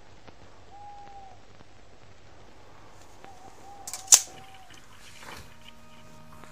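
A single sharp click about four seconds in, over a low steady hum, with two faint brief tones before it; music begins near the end.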